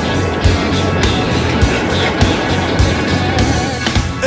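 Rock band music: a steady drum beat with a hit about every 0.6 seconds under bass and a dense, gritty guitar texture.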